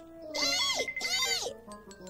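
A cartoon mouse's two high-pitched squeaky cries, voiced by a performer, over light background music that ends in a few soft chiming notes.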